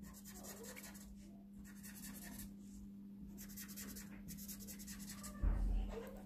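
Felt-tip marker scribbling back and forth on paper in faint, repeated strokes, colouring in a bar of a bar chart. A steady low hum runs underneath, and there is a low bump near the end.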